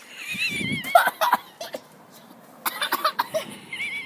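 A girl coughing and spluttering with laughter after a dry mouthful of icing sugar. The coughs come in uneven short fits.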